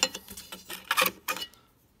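Handling noise: a few short clicks and rattles as a circuit board with large capacitors is turned and shifted against a metal power-supply chassis.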